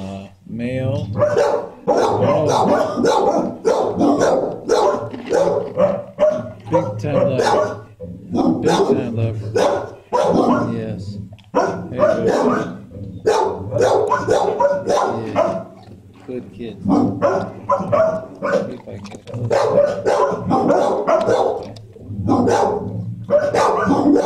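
Dogs barking over and over in shelter kennels, an almost unbroken din with only brief gaps.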